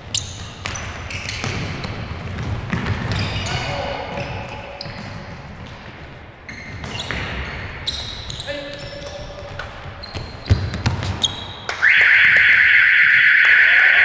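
Indoor futsal play in a sports hall: players shouting and the ball being kicked and bouncing on the hall floor. About two seconds before the end a loud, harsh buzzer starts and holds for nearly three seconds, the hall timer sounding the end of play.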